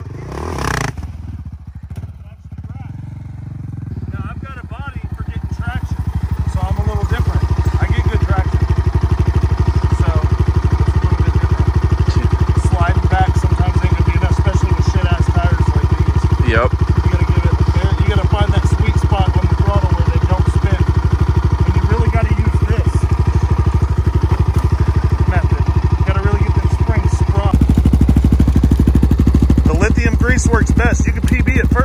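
A small ATV engine running steadily, growing louder over the first several seconds and then holding an even note, with a man talking under it.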